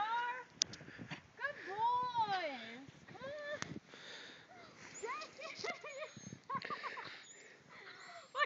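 A dog whining and yowling in high-pitched calls that rise and fall, several times over, as it struggles through deep snow.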